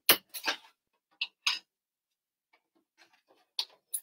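A few short, sharp clicks as a snap-on overlock presser foot (foot no. 3) is fitted onto a PFAFF sewing machine's presser-foot holder, with a quiet gap in the middle.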